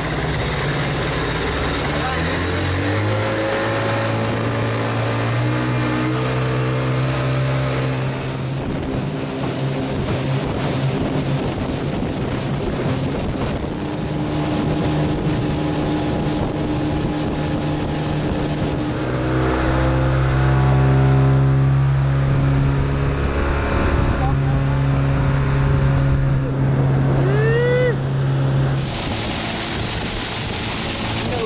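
Outboard motor of a small aluminium boat running at speed, its pitch climbing as it is throttled up in the first few seconds and shifting with the throttle about two-thirds of the way in. A short rising whistle-like call sounds near the end, just before the engine note drops away and wind and water hiss take over.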